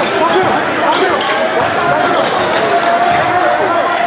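A basketball being dribbled on a hardwood gym floor, a run of sharp bounces, over the voices of a crowd in the gym.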